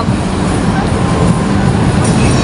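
Steady low rumble of outdoor city noise, such as passing traffic, with no distinct events standing out.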